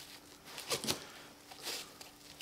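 Quiet, short rustles of a backpack's fabric belt strap being loosened through its buckle: two quick strokes a little under a second in and another near the end.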